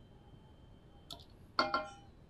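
Wooden spatula knocking against a stainless steel saucepan: a faint tap about a second in, then a louder clink with a brief metallic ring near the end.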